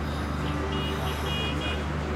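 Steady low hum and rumble of outdoor background noise, with a few faint, short high chirps about a second in.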